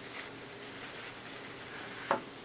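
Steady low hiss of room tone, with no distinct strokes, taps or knocks.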